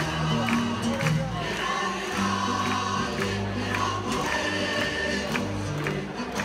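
Live music: a choir singing with instrumental accompaniment over a steady beat, about two strokes a second.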